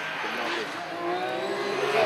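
Porsche 911 GT3 rally car's flat-six engine at speed as the car approaches, its note growing louder and rising slightly in pitch.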